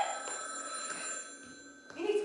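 Telephone bell ringing, a cluster of steady high tones that fades away just before the end.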